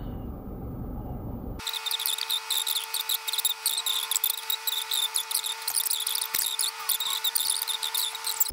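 A woman's recorded voice played fast-forward, sped up into rapid high squeaky chatter over a steady whine. It starts abruptly about one and a half seconds in, after a low rumble inside a parked car.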